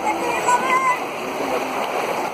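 Feet splashing as several people wade through shallow, muddy flowing water, with voices in the background.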